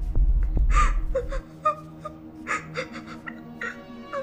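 A woman sobbing, with a few sharp gasping breaths, over a background music score of held tones. A deep low hum under it cuts off about a second and a half in.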